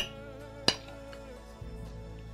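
Soft background music with two sharp clinks of metal cutlery against plates, one right at the start and another under a second later.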